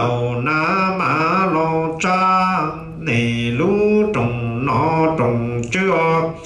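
A man chanting Hmong funeral verse (txiv xaiv) into a microphone, in long, sustained sung phrases whose pitch bends and slides, with a brief break for breath about three seconds in.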